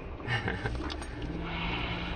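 Car running along a street, heard from inside its cabin: a steady low engine and road hum.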